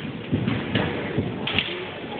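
Drill platoon working rifles and stamping in unison: a series of sharp knocks and thumps, about four in two seconds, echoing in a gymnasium.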